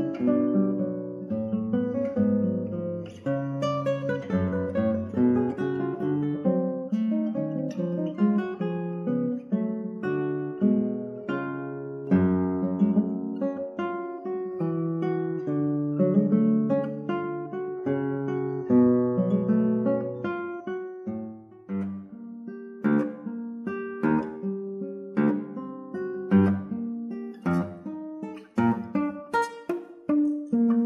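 Background music of solo acoustic guitar: a plucked melody over bass notes, turning to sharper strummed chords in the last several seconds.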